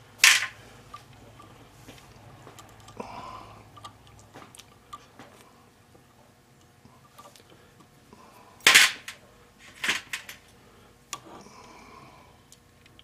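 Sharp metallic clicks and light clinks of small steel tooling being handled on a watchmaker's lathe while a tiny carbide drill is fitted into the tailstock chuck: one loud click just after the start, faint ticks through the middle, and three more loud clicks near the end.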